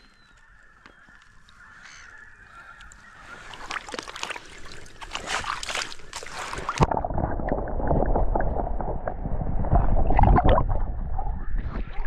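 Shallow river water splashing as a Murray cod is handled out of a landing net, growing louder a few seconds in. About seven seconds in, the sound suddenly turns muffled and low as it is heard from under the water during the release, with water sloshing and churning. It clears again as the microphone surfaces near the end.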